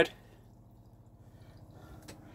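Quiet room tone with faint dripping from a chrome mixer tap that has just been shut off over a sink.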